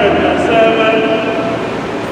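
A priest's voice intoning a prayer on long, steady held notes.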